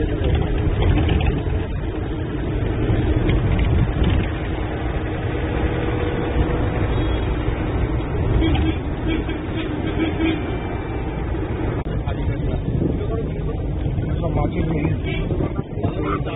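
Minibus running on the road, heard from inside the passenger cabin: a steady low engine and road rumble.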